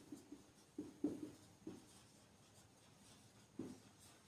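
Marker pen writing on a whiteboard: a few faint, short strokes in small clusters, with a pause of a second or two before a last stroke near the end.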